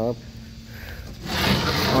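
Wooden sliding cabinet door scraping along its track as it is pushed open, a loud rough rush starting a little past a second in.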